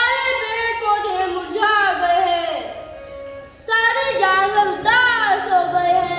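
A child singing a melody in held, bending notes, in two phrases with a short pause about three seconds in.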